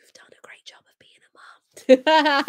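A woman whispering faintly and breathily, then breaking into a laugh and an "oh" near the end.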